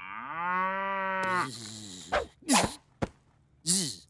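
A cartoon cow's long moo, rising in pitch at first and then held level for about a second and a half, followed by a few brief sounds and a click.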